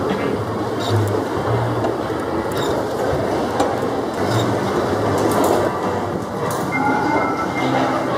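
A carousel turning, its drive and platform giving a steady rumble, with music playing underneath.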